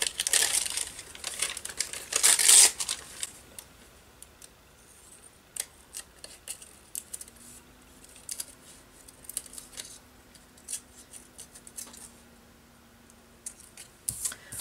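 Paper and craft supplies being handled on a paper-covered table: a loud rustle for the first three seconds or so, then scattered light clicks and taps.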